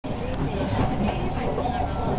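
Steady running rumble of a passenger train in motion, heard from inside the car.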